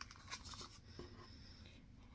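Faint rustling and a few light taps of a handmade paper-bag journal being closed and turned over on a wooden table.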